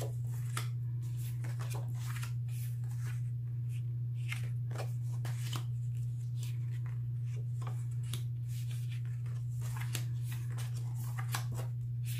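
Paper cards and envelopes being handled and shuffled, with irregular short rustles and light taps. A steady low hum runs underneath and is the loudest part.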